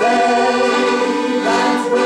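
Group singing of a chorus in held notes, accompanied by a piano accordion playing sustained chords.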